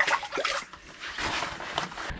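A crappie released back into an ice-fishing hole: a few small splashes and water sloshing in the hole.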